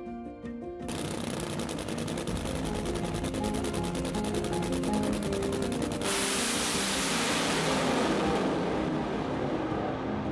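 Nitro Funny Car's supercharged V8 running with a rapid crackle from about a second in. About six seconds in it turns to a smoother steady noise as the car launches. Background music with held notes plays underneath.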